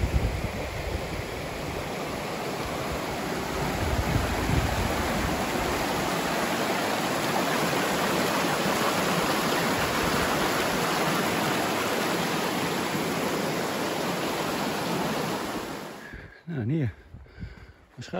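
Small rocky forest stream rushing and splashing over boulders, a steady rush that grows a little louder about four seconds in and cuts off abruptly near the end.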